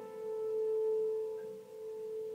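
A single piano note left ringing, its tone held steady and slowly dying away with no new note struck.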